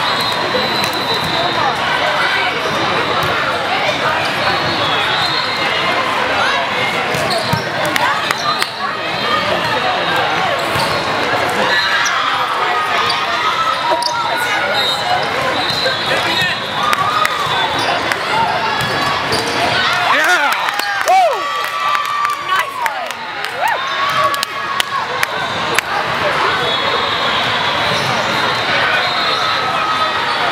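Busy volleyball tournament hall: constant echoing chatter of many voices, with volleyballs being struck and bouncing on the wooden courts and scattered high squeaks from sneakers on the floor.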